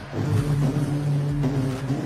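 A man mimicking a car stereo's booming bass with his voice into a microphone: a low, steady vocal note held for about two seconds.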